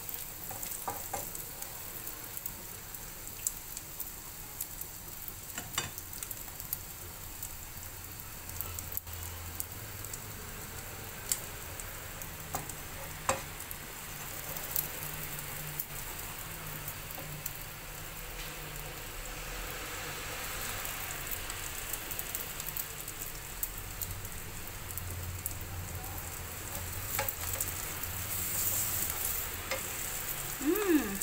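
Egg omelette with spring onions frying in oil in a pan: a steady sizzle with occasional sharp pops.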